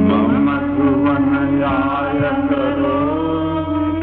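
Devotional bhajan singing: a solo voice carrying a melodic line with gliding, ornamented notes over a steady drone.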